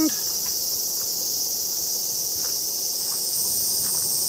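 Steady, high-pitched insect chorus, unbroken and even throughout.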